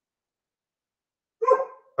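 Silence, then about a second and a half in a single short dog bark, picked up over a video-call microphone.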